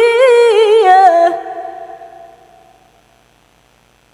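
A reciter's voice chanting Quranic verse in melodic tilawah style, with fast ornamented pitch turns on a long held note. The note ends about a second and a half in and its sound trails off over the next second or so.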